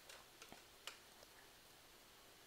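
Near silence: room tone with a few faint, short clicks in the first second or so.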